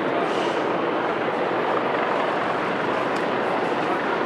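A steady, loud, engine-like outdoor roar that does not change.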